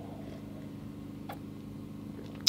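Steady low hum made of several even tones, with one faint click about a second in.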